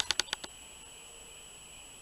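A few quick clicks at the start, then steady background hiss with a faint high-pitched whine: the recording's own microphone noise.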